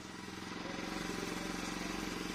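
Motorcycle engine idling steadily with an even, fast pulse. It fades in over the first half-second.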